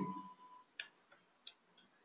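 A few faint computer keyboard keystrokes, spaced irregularly, after a man's voice trails off at the start.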